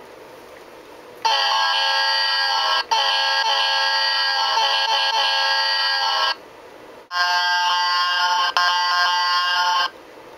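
Sampled multi-chime diesel locomotive air horn played by an MRC sound decoder through a model locomotive's small speaker: a long blast of about five seconds, then after a short pause a second blast of about three seconds, each with a momentary break.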